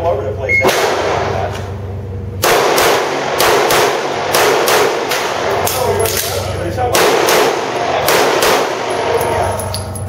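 Handgun shots echoing off the concrete walls of an indoor range: a single shot early, then a fast string of shots starting about two and a half seconds in, a short pause, and a second fast string.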